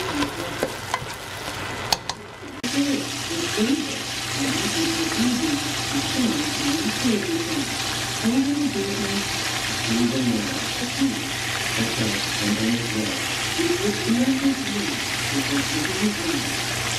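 Chicken drumsticks pan-frying in hot oil in a skillet: a steady sizzle, with a brief dip about two seconds in.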